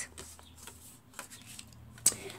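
Faint rustling and a few light taps of a cardstock card base being picked up and laid down on the work mat.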